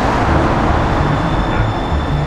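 Loud, steady rush of traffic noise with no break or distinct event.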